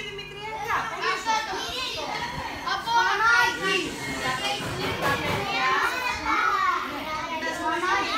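A group of children talking and calling out over one another, an overlapping chatter of young voices.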